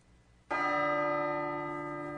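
A single bell-like chime with a rich ring starts about half a second in and slowly fades. It is the opening sting of a played-back audio language lesson.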